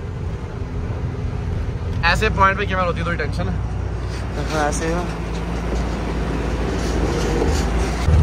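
A truck's diesel engine running steadily, heard from inside the cab as a low rumble.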